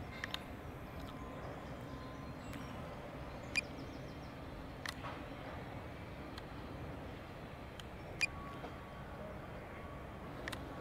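Faint, steady outdoor background noise, with three short, sharp clicks scattered through it.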